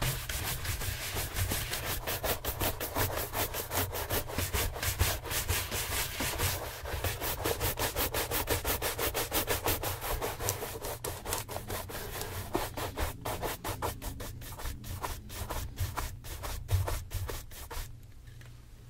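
Bristle shoe brushes swept rapidly back and forth over a leather loafer, a dense run of brisk brushing strokes that stops at the end.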